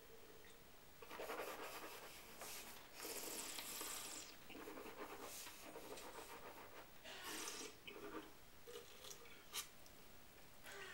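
Faint slurping of white wine and breathy draws of air through the mouth as the wine is tasted, in several soft stretches of about a second each. A single sharp click comes near the end.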